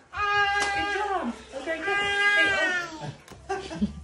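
Two long, high drawn-out vocal calls, each held on one pitch and then falling away at its end, the second starting about a second and a half in.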